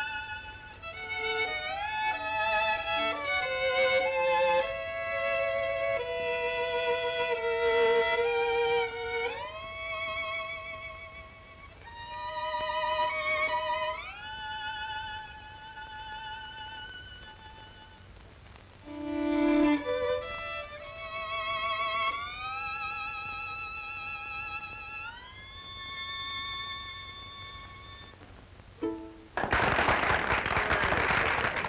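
Solo violin playing a slow melody with wide vibrato, sliding upward into its notes several times, and stopping shortly before the end.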